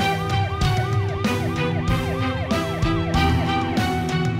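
Dramatic background music with a steady drum beat and a fast rising-and-falling, siren-like wail that repeats several times a second and stops shortly before the end.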